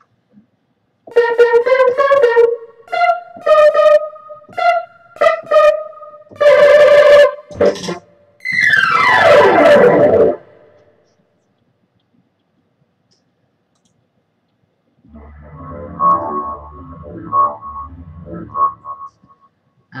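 Korg Wavestation software synthesizer played from a Casio keyboard on its 'Unison Saw Stab' preset: a run of short stab chords, then a long chord sliding steadily down in pitch from about eight and a half seconds in. After a few seconds' pause, another patch plays a short phrase with low bass notes under higher tones.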